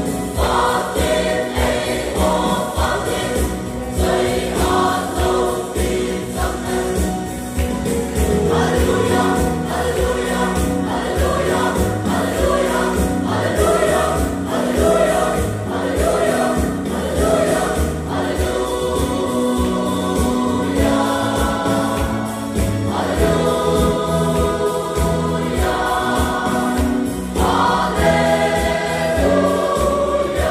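Mixed choir of women's and men's voices singing a gospel song in several parts, with long held chords between phrases.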